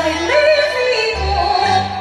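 Yue opera singing: a high voice carrying a gliding, ornamented sung line over the stage band's instrumental accompaniment, with low bass notes underneath.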